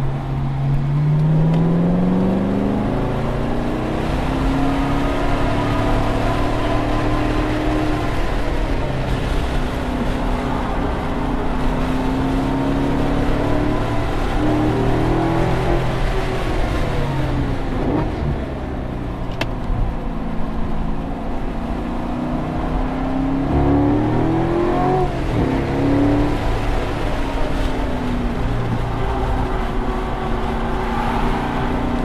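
Chevrolet C7 Corvette Grand Sport's 6.2-litre V8 heard from inside the cabin at track pace, its note rising as it pulls up through the revs and falling back as it lifts for corners, again and again over steady road and wind noise. About three-quarters of the way through the revs drop sharply and climb again.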